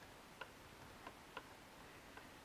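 Three faint clicks from the controls of a Flysky FS-ST16 radio transmitter as the elevator rate is stepped down, over near silence.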